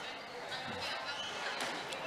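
Squash ball being hit during a rally: a few sharp pops from racket strikes and the ball hitting the court walls, one about a second in and two close together near the end.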